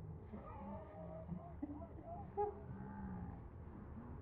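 Faint, indistinct human vocal sounds with a wavering pitch and no clear words, with a couple of slightly louder moments about a second and two and a half seconds in.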